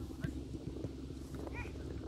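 Faint outdoor background with a low steady rumble, a few distant children's calls about three-quarters of the way through, and a faint knock near the start.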